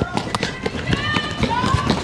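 Quick footsteps on a city sidewalk, heard as a run of sharp steps, with short high raised voices over them.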